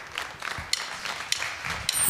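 Light scattered clapping from a studio audience, with a few sharp single claps standing out about every half second.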